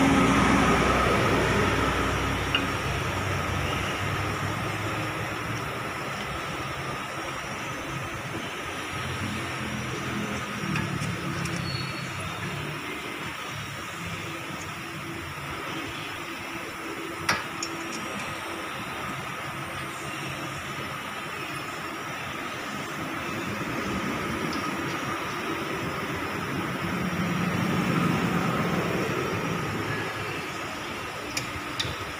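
Vehicle noise over a steady background hum, swelling at the start and again near the end as if vehicles pass by, with two sharp clicks, one early and one just past the middle.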